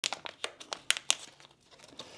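Thin plastic wrapper crinkling and crackling as it is torn open by hand, with a quick run of sharp crackles over the first second, then quieter.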